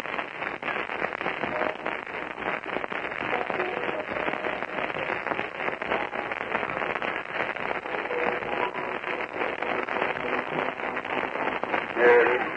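Heavy crackle and hiss of an old 1950 sermon recording, with faint indistinct voices buried under the noise.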